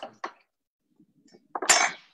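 A sharp clink of kitchen crockery or utensils, one loud knock with a short rattle after it near the end.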